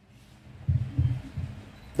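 Three low, dull thumps in quick succession, about a third of a second apart, over quiet room tone.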